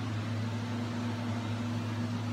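Steady low hum with an even hiss underneath: the constant background drone of a room with a machine running.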